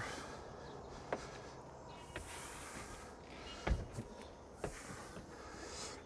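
Faint handling sounds of a Sunbrella canvas dodger top being pulled and smoothed over its frame: soft rustling with a few light taps, and a low thump a little past the middle.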